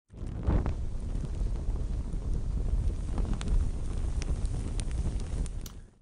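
Low, steady rumbling noise with a few faint scattered clicks, fading out just before the end.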